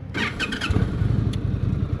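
An Indian touring motorcycle's V-twin engine being started: a brief whirr of cranking, then the engine catches about two-thirds of a second in and settles into an even, pulsing idle.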